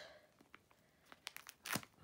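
A parcel's packaging being torn open by hand: a few short crackles and rips, the loudest just before the end.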